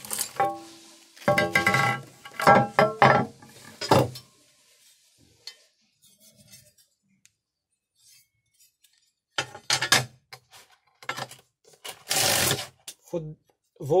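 A sheet of 1 cm thick glass knocking and clinking with a ringing note as it is handled and set down on a wooden table, several knocks in the first four seconds. After a quiet pause, a metal square is laid on the glass with a few clicks, then slid across it in a short scrape.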